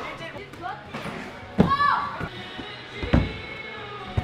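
Two thuds of a person landing on trampolines or crash mats, about a second and a half apart, with brief shouts over faint background music.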